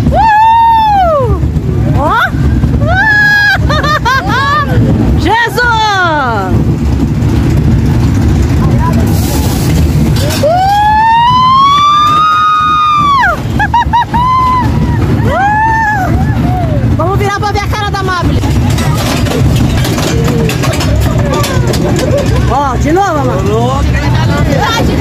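Riders on a small roller coaster shrieking and whooping again and again, each scream rising and falling in pitch, with one long held scream near the middle. Under them runs the steady low rumble of the moving coaster cars.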